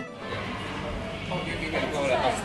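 Loud karaoke music and voices filling a busy room as a noisy wash, with a voice rising out of it in the second half.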